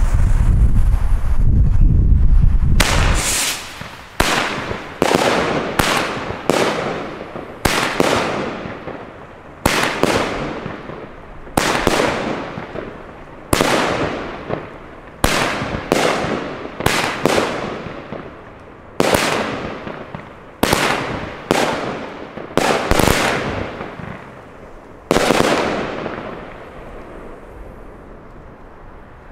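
Consumer firework battery (Pyroland Hair Force One gold-rain cake) firing shot after shot, about one every half second to a second and a half. Each is a sharp report that fades away slowly. It opens with about three seconds of deep rumble, and the last shot comes about three seconds before the end.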